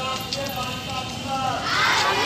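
A group of schoolgirls' voices calling out on a street march, fairly faint against outdoor background noise.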